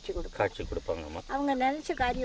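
A person speaking, with a faint steady high-pitched cricket chirring behind the voice.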